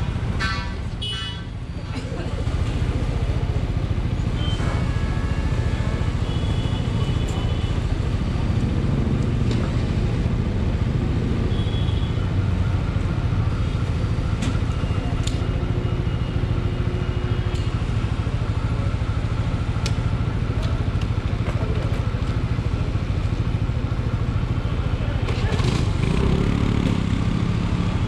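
Motorcycle and scooter engines idling steadily in a fuel-pump queue, with people's voices around, clearest near the end.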